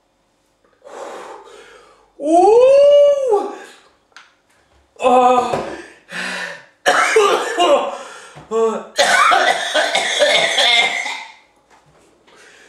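A man coughing and clearing his throat over and over, his mouth burning from extremely hot chilli sauce. About two seconds in he lets out a long vocal 'ooh' that rises and then falls in pitch, and the coughs and throat clearing come in a run after it.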